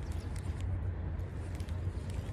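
Steady rushing noise of flowing creek water, with a low steady rumble underneath.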